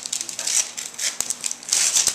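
Tissue paper and gift-wrap paper rustling and crinkling in repeated bursts as a small child pulls them out of a present box, with a sharp click just over a second in.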